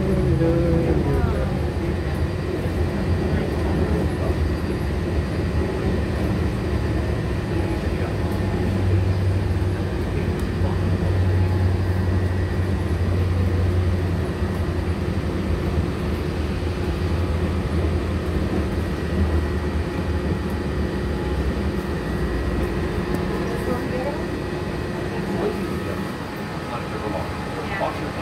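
Walt Disney World monorail running, heard from inside the car: a steady electric hum over a low rumble that grows heavier through the middle and eases near the end.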